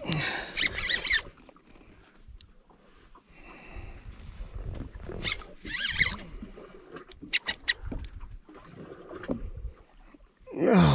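An angler grunting and straining as he winds a jigging reel against a hooked fish, over a low rumble on the boat. A quick run of clicks comes about seven seconds in.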